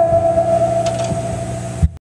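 A single held organ note ringing out over a steady low hum as the song ends, with a faint light hit partway through and a knock. A thump comes just before the sound cuts off.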